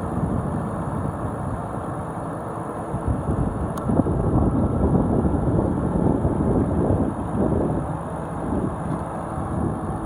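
A 2011 Ford Crown Victoria Police Interceptor's 4.6-litre V8 idling steadily and warm, heard from over the open engine bay. The seller says it sounds great.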